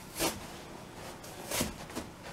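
Old, crumbling yellow seat foam being torn and pulled off a chair seat by hand: two short tearing noises about a second and a half apart.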